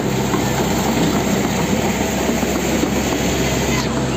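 Excavator's diesel engine running steadily with a low hum, under a dense, even rushing noise.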